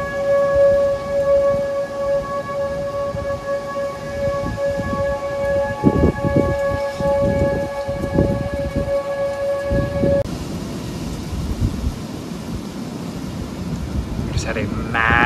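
Outdoor warning siren sounding one steady, unwavering tone over gusting wind rumbling on the microphone, signalling an approaching severe storm. The siren cuts off suddenly about ten seconds in, leaving only the wind.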